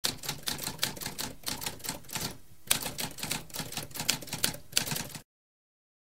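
Typewriter typing: a rapid run of key strikes, a brief pause about two and a half seconds in, then a second run that stops about five seconds in.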